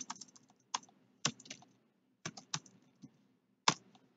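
Computer keyboard being typed on in short irregular bursts of sharp key clicks, with brief pauses between. There are stronger keystrokes at the start and near the end.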